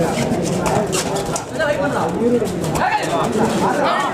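A man's voice calling out continuously over the match, loud and unbroken.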